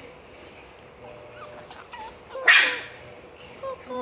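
A small dog barks once, a short sharp bark about two and a half seconds in, with a few faint short whines before it.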